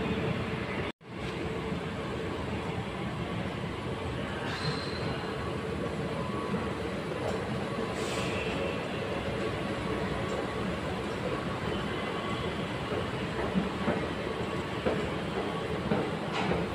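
Steady running noise of a Taipei MRT train in the station, with faint steady tones over the rumble. There is a brief silent gap about a second in.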